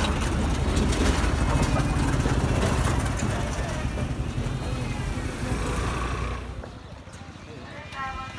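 Outdoor street ambience: a low rumble and distant people's voices. The rumble drops away about six seconds in, leaving faint voices.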